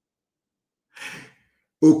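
A man's short, audible breath about a second in, between moments of dead silence, before his speech resumes near the end.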